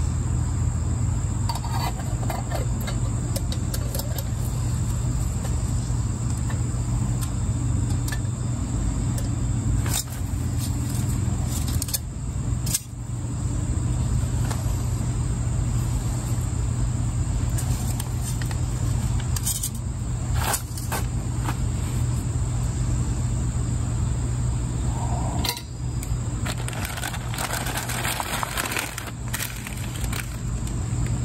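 Small handling sounds of camp cooking gear and food packets, a few sharp clicks and some rustling, over a constant low hum and a steady high whine.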